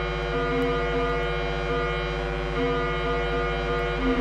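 Homemade digital modular synthesizer (an Arduino-patched, JavaScript-based soft synth) playing a sustained buzzy drone. Higher notes step on and off in an irregular pattern over a steady low tone while the oscillator knobs are being turned.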